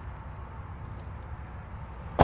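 Steady low background hum with faint hiss and no distinct events.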